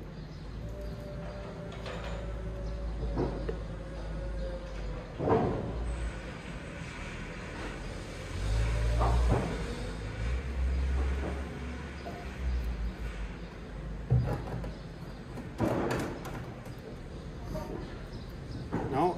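Plastic containers handled on a table: several knocks as a jerrycan and a plastic measuring jug are picked up and set down. Around the middle comes a louder stretch as resin is poured from the jerrycan into the jug. A low rumble runs underneath throughout.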